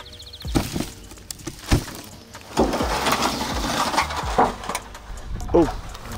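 Dry grass and litter crunching and rustling underfoot and under handling, with a few sharp knocks, as a cover sheet is lifted off the ground; the rustling grows louder about halfway through.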